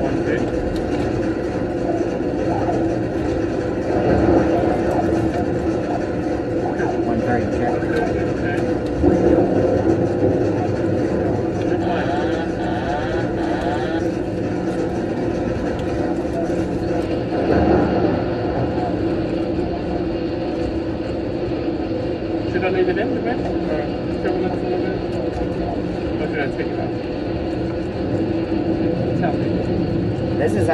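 Steady drone of an airliner flight simulator's cockpit sound, simulated engine and airflow noise in flight. Several steady hum tones hold unbroken throughout.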